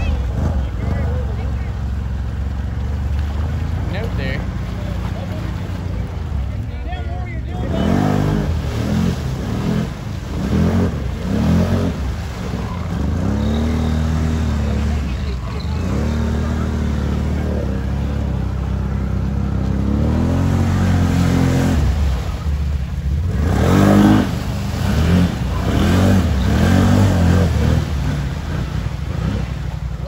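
Can-Am Renegade 1000 XMR ATV's V-twin engine running under load as the quad churns through deep lake water, its pitch rising and falling repeatedly with the throttle.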